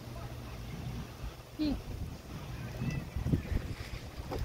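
Wind buffeting an outdoor microphone as a low, uneven rumble that gusts harder about three seconds in, with a man's short "hmm" between.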